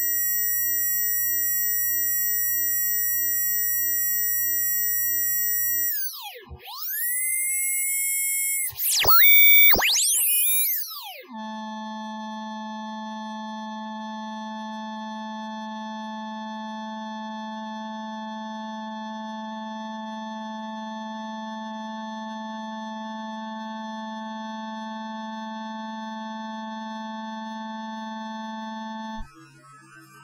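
Test tones from a function generator fed into a sound card and tuned to about 23 kHz, near the card's upper limit, where it comes through as steady high whistling tones. About six to eleven seconds in, the tones glide and sweep up and down as the frequency is tuned. After that comes a quieter steady cluster of tones over a low hum-like tone, which cuts off shortly before the end.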